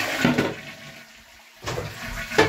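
Push-button toilet cistern flushing: water rushes, then dies away about a second in. A brief sudden sound comes near the end.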